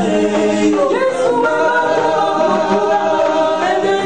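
Several voices singing a gospel worship song in harmony, with a woman's voice among them, on long held notes that change pitch about a second in and again near the end.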